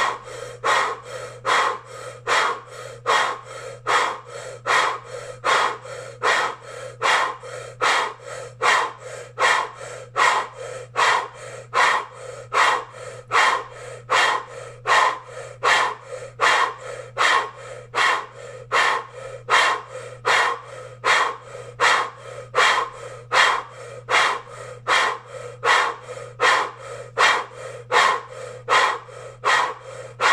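A man breathing forcefully and rhythmically in and out through a rounded mouth, about one breath a second, as a Kundalini yoga breathing exercise.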